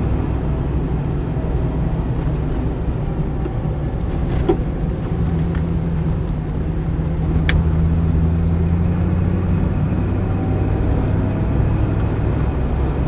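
Land Rover 90's V8 engine, fitted with an Edelbrock four-barrel carburettor, running under way and heard from inside the cabin with road noise. The engine note grows stronger after about five seconds, and a single sharp click sounds about seven and a half seconds in.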